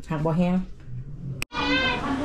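A woman talking, then an abrupt cut about a second and a half in, after which a high-pitched, drawn-out voice cries out.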